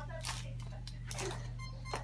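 Faint rustling and light clicks of craft items being handled while a small paintbrush is looked for, over a steady low hum.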